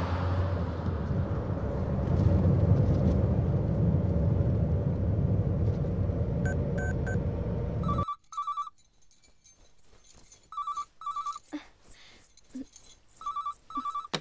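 A steady low rumble of a car cabin on the move for the first eight seconds, then it stops suddenly and a corded landline telephone rings: a high double electronic ring, three times, about every two and a half seconds.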